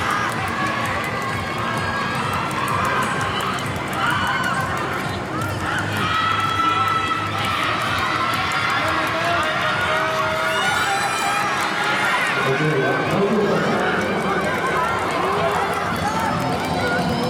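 Many spectators' voices shouting and cheering on sprinters in a 4x100 m relay, overlapping into a steady crowd din.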